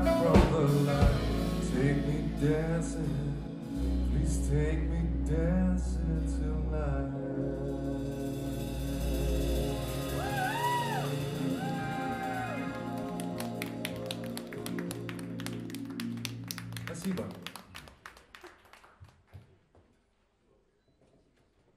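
Live band of voice, electric guitar, bass, keyboard, saxophone and drum kit playing the end of a song: sung lines over the band, then a long held closing passage. The final notes stop about 17 seconds in, and the sound dies to near silence.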